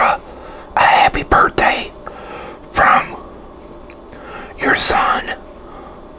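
A man whispering close to the microphone in a few short phrases with pauses between them.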